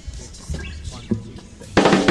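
A few quiet low thumps, then near the end a live rock band of drum kit, bass and electric guitars comes in suddenly and loudly as a song begins.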